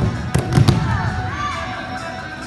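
A quick run of four sharp slaps and cracks, a third of a second in, from taekwondo students' self-defense takedowns and strikes on floor mats, over background voices.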